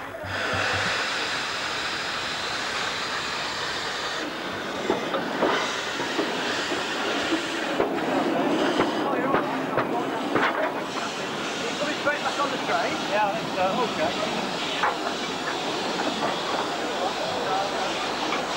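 Miniature 15-inch gauge steam locomotive standing at a platform, hissing steam steadily from about the first second, with occasional clanks and voices nearby.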